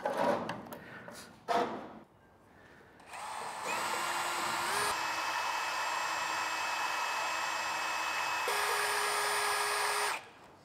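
A few knocks and clatters, then a cordless drill fitted with a paddle mixer stirring a gallon can of paint: the motor whines steadily from about three seconds in, its pitch stepping a few times as the speed changes, and it stops at the very end.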